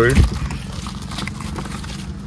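Handling of packaging: a foam sheet and a cardboard box rustling and clicking in irregular light taps as an Android head unit is taken out. A steady low hum runs underneath.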